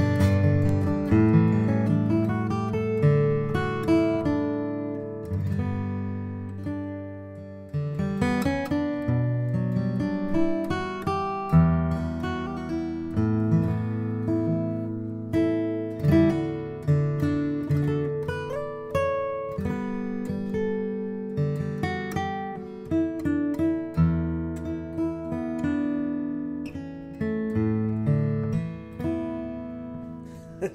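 1941 Gibson J-55 mahogany flat-top acoustic guitar being played solo: strummed chords and picked notes that ring out and fade between strokes, getting softer about six to eight seconds in before picking up again with a hard strum.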